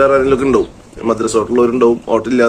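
A man talking in Malayalam, with a short pause a little over half a second in.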